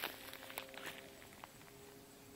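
Footsteps of someone walking through dry weeds and brush: a handful of short, sharp steps and rustles, the loudest right at the start.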